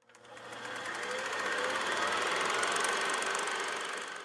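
Film projector sound effect: a rapid, even mechanical clatter that swells in over the first second, holds steady and fades away near the end.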